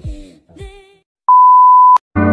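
The tail of an intro music jingle ends, and after a brief pause a loud electronic beep holds one steady pitch for under a second, then cuts off abruptly.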